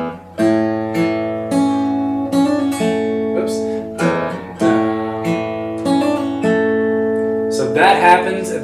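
Steel-string acoustic guitar fingerpicked: notes of an A chord plucked one by one with hammer-ons, each ringing on under the next, about one or two plucks a second.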